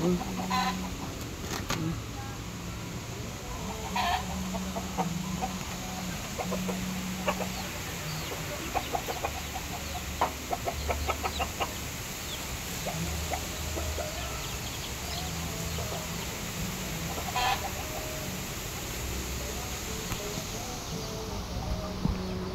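Chickens clucking now and then over a low, intermittent background hum, with light clicks and rustles from handling close by.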